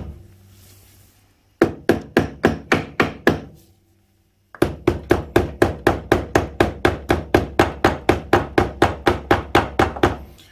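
Soft-faced mallet giving rapid light taps to the alloy gearbox inner cover of a 1978 Triumph T140 Bonneville, about five taps a second. A short run of taps comes, then a pause of about a second, then a longer run. The taps are easing the cover off the casing along a joint glued with excess sealant that has just begun to crack open.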